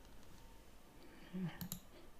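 Quiet room with a brief low murmur and then a few faint clicks near the end.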